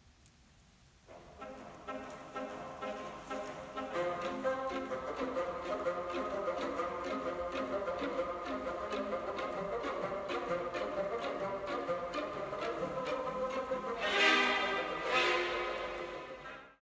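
Classical chamber music with a violin prominent over other instruments, coming in about a second in with a steady pulse of notes and swelling louder near the end.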